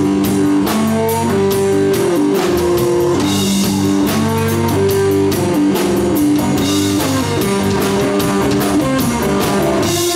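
Live blues band of electric guitar, electric bass and drum kit playing an instrumental passage, the guitar carrying a melody of held notes over a steady beat.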